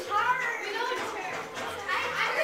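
Indistinct chatter and exclamations of a group of young girls' voices.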